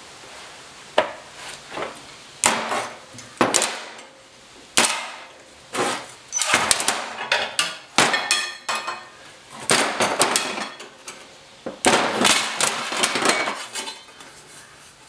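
Locking C-clamp pliers being snapped open and set down one after another on a steel workbench: an irregular run of metal clanks and clatters, some of them ringing, as a beaded sheet-metal patch panel is freed from a homemade steel beading jig.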